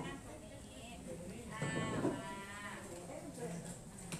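A person's voice in one drawn-out call lasting about a second, near the middle.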